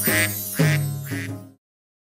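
Three cartoon duck quacks, about two a second, over the last bars of a children's song's music; it all stops suddenly about one and a half seconds in.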